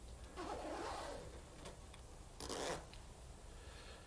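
Zipper of a hooded sweatshirt being pulled up, a short quick zip about two and a half seconds in, with a softer, longer whoosh of cloth in the first second.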